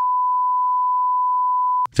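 Censor bleep: one steady pure tone at about 1 kHz, held for nearly two seconds and cut off suddenly, dubbed over a spoken word to mask it.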